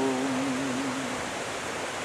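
A man's unaccompanied singing voice holds the last note of the alto line, on the word "home", with a slight waver, and fades out a little over a second in. Under it and left alone afterwards is the steady rush of a fast-flowing rocky stream.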